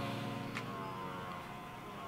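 Soft background music: a held chord fading slowly after the beat drops out.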